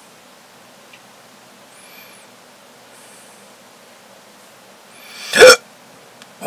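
Quiet room tone, then a man's single loud hiccup about five seconds in, with a short intake of breath and a sharp stop.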